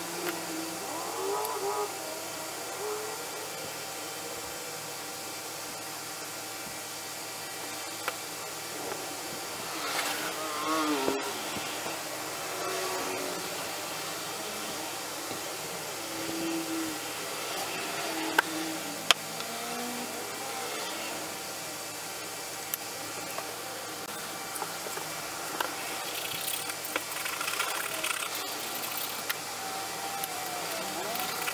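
Quiet bench work: liquid paint stripper brushed onto a wooden hammer handle and the softened paint scraped off, with a few sharp clicks.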